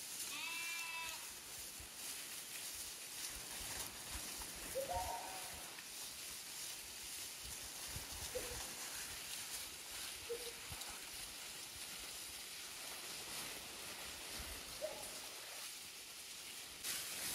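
Sheep in a grazing flock bleating: one longer bleat at the start, then four short, scattered bleats, over a steady faint hiss.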